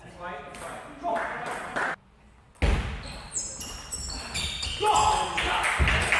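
Table tennis rally: the ball clicking sharply off bats and table in a quick series in the second half, in a sports hall. Voices are heard in the first second or so.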